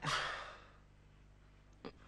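A man sighs once, a breathy exhale that fades away within about half a second. A brief click follows near the end.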